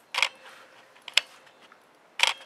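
Camera buttons being pressed to switch in the built-in ND filter: a short scratchy click about a fifth of a second in, then a single sharp click about a second later.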